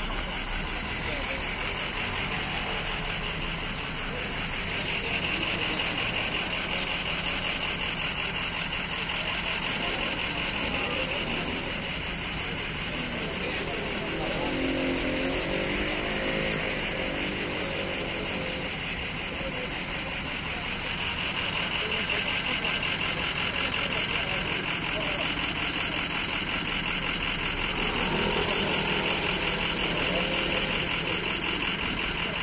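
People talking in the background over the steady sound of an idling vehicle engine, with voices rising more clearly at two points.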